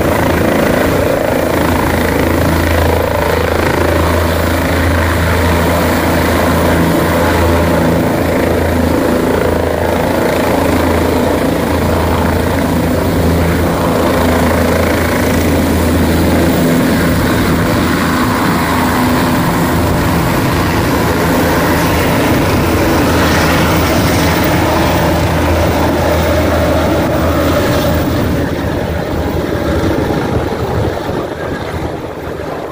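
A helicopter's rotor and engine running loud and steady close by as it lifts off and climbs away, the sound easing off slightly near the end.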